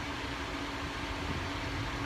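Steady mechanical hum: a low rumble with a faint constant tone, unchanging throughout.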